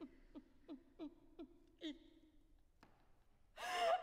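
A soprano's voice makes short, soft, falling gasps of laughter, about three a second, dying away. After a pause a loud burst of laugh-like vocalizing breaks out near the end.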